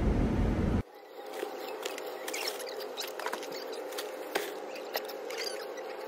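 Plastic grocery bags crinkling and rustling in a car's cargo area, with many small clicks and short high squeaks over a faint steady hum.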